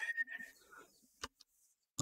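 Faint keystrokes on a computer keyboard, with a single sharper key click a little past halfway through.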